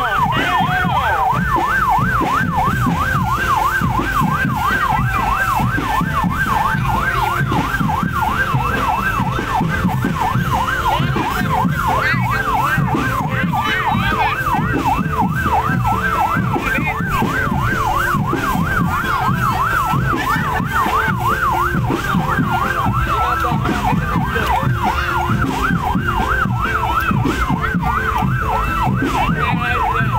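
A loud, fast warbling siren tone sweeping up and down about four times a second, unbroken throughout, over a dense low-pitched background.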